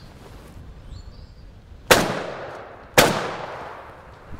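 Two shots from a Browning Maxus semi-automatic shotgun, about a second apart, the gun cycling itself for the second shot; each report rings out and trails off over about a second.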